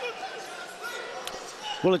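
Faint thuds from the boxing ring as two boxers grapple in a clinch, over the steady murmur of an arena crowd.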